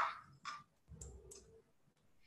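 Three faint, sharp clicks in the first second and a half.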